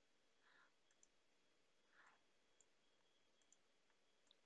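Near silence: faint room tone with a few tiny clicks.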